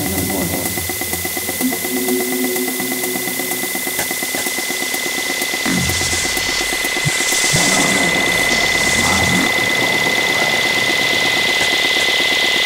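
Electronic dance music, a techno track: a steady high synth tone held over a fast, machine-like buzzing pulse, with swooping low sweeps and hiss swells from about halfway through.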